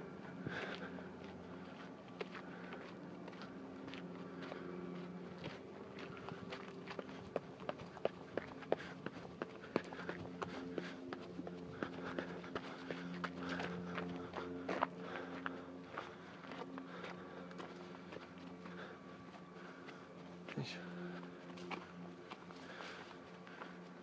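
Footsteps of a person walking on a path, with irregular sharp clicks and crunches that come thickest in the middle, over a faint steady low hum.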